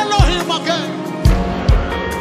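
Live gospel worship band playing: a lead singer's melody over keyboards and drums. The singing fades out a little under a second in, and heavy kick-drum strikes follow with the band playing on.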